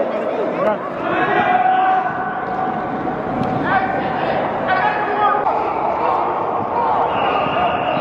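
Overlapping shouts and chatter of many men, football players and coaches, echoing in a large indoor practice hall, with occasional thumps.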